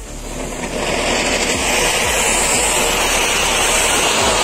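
Anar (cone-shaped firework fountain) burning: a loud, steady hiss of spraying sparks that swells over the first second and then holds.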